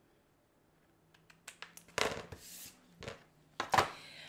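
Scissors snipping through a clear acetate plastic strip: a few short, sharp snips and crackles after about a second of quiet, the loudest about two seconds in and again near the end.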